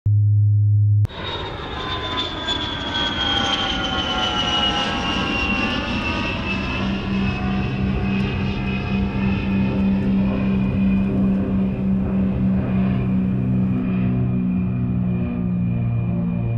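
A steady low electronic tone for about the first second. Then aircraft engine noise: a whine of several tones falling in pitch over the next few seconds, settling into a steady low drone.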